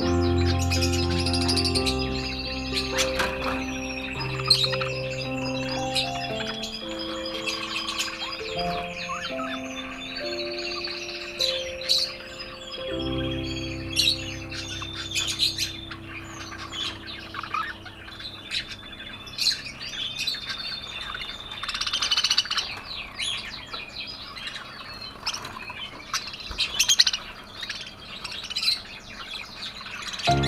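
A flock of caged budgerigars chirping and warbling without a break, with sharp single calls scattered through. Slow background music plays under the birds and fades out about halfway through.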